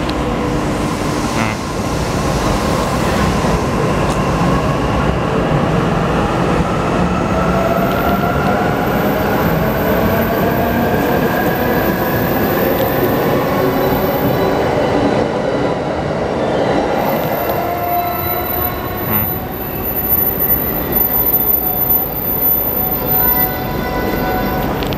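E259 series Narita Express electric train pulling away from the platform and accelerating past. The whine of its inverter-driven traction motors rises steadily in pitch over about ten seconds, and the wheels run over the rails as the last cars go by.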